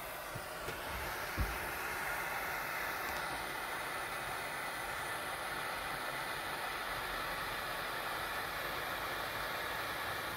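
Hand-held propane torch burning steadily, an even hiss with no change in level. A single soft knock comes about a second and a half in.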